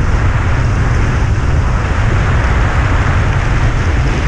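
Loud, steady wind buffeting on an action camera's microphone from a mountain bike going fast downhill on an asphalt road, mixed with the hum of the tyres on the road.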